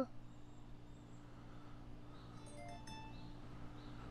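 JBL PartyBox 100 speaker sounding a short, faint chime of a few quick notes stepping upward, about two and a half seconds in. It is the tone that signals the two speakers have paired in TWS (True Wireless Stereo) mode and are playing together.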